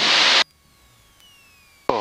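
A burst of steady hiss from cockpit wind and engine noise through an open headset or intercom microphone, cut off suddenly about half a second in. A faint background with a thin falling tone follows.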